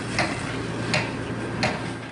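Three sharp knocks on a door at a steady pace of about one every 0.7 s: firefighters forcing a house's front door, over a steady background hum.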